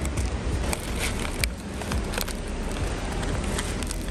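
Steady outdoor street noise with a low rumble, broken by a few short crackles and clicks.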